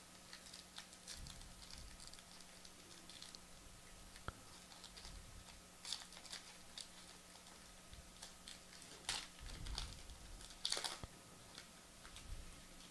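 Football trading cards being handled and flipped through by hand: faint, scattered clicks and light rustles of card stock, with a few louder rustles in the second half.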